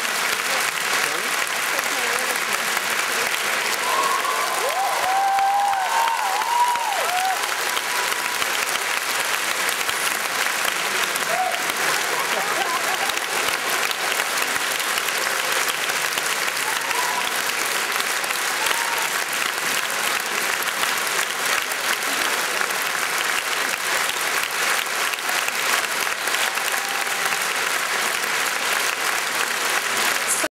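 Large concert audience applauding steadily, with a few voices calling out about four to seven seconds in.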